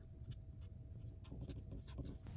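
Sharpie felt-tip marker writing on paper: a series of short, faint strokes as a line of an equation is written out.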